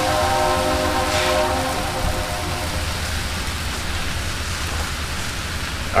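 Bread sizzling on a hot propane flat-top griddle, a steady hiss throughout. For the first two seconds a steady pitched drone sounds over it, then fades out.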